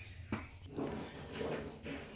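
One sharp click about a third of a second in, followed by a few fainter clicks and soft handling noise.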